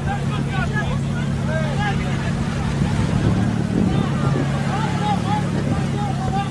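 A boat's motor droning steadily at sea, with many overlapping voices of people aboard calling out over it.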